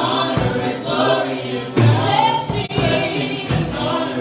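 A small gospel choir singing together in harmony, with steady low accompanying notes underneath.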